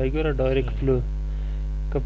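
Steady low electrical hum on the recording, with a man's voice over it for about the first second and the hum alone after that.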